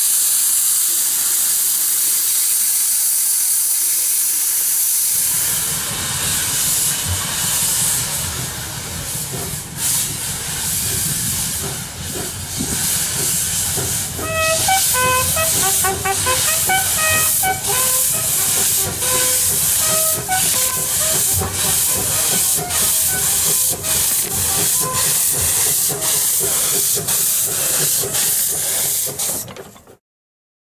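Narrow-gauge steam locomotive: steady steam hiss from the open cylinder drain cocks for about five seconds, then regular exhaust beats, about two a second, as the engine works.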